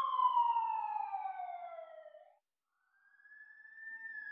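Siren sound effect: a wailing tone that falls slowly in pitch, breaks off a little past halfway, then rises again near the end.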